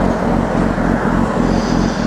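Kawasaki ZX-10R sport bike's inline-four engine running steadily at freeway cruising speed, with wind rushing over the camera microphone.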